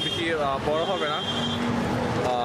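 A man talking, over steady street background noise.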